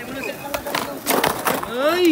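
Skateboard on concrete during a flat-ground trick attempt: a few sharp wooden clacks of the tail popping and the board hitting the ground. Near the end a person's drawn-out shout rises and falls in pitch.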